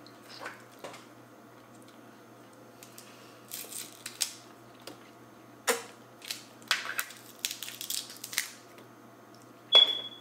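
Boiled crab legs being cracked and picked apart by hand: scattered sharp cracks and snaps of shell, coming in clusters through the middle. The loudest is a single sharp click with a brief ring just before the end.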